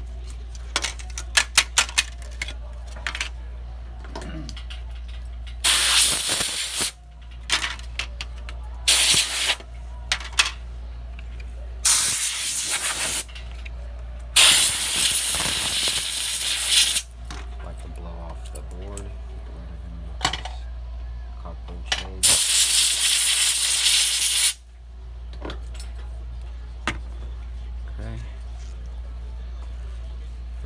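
Pressurised spray hissing in five separate bursts, each one to three seconds long, with light clicks and taps of handling between them.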